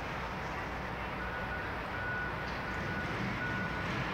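Steady city street hum with a high-pitched electronic beeper sounding several times, starting about a second in.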